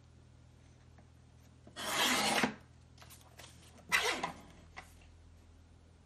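Mini guillotine paper cutter slicing through paper: a short rasping cut about two seconds in, then a second, shorter scrape about four seconds in, with a few light clicks of paper being handled.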